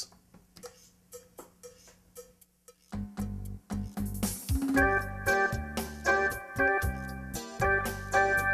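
Yamaha QY300 sequencer playing a rhythm-machine accompaniment driven by chords played on a keyboard: faint ticks about two a second, then about three seconds in a drum and bass pattern starts, and held keyboard chords join it nearly two seconds later.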